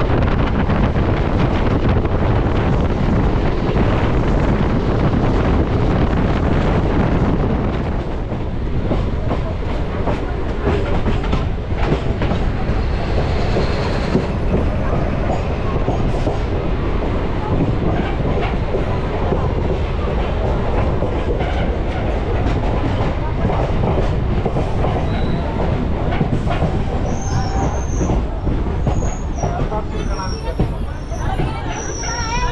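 MEMU electric multiple-unit train running at speed, heard from an open window or door: a loud, steady rumble of wheels and carriage. From about eight seconds in, the wheels click plainly over the rail joints.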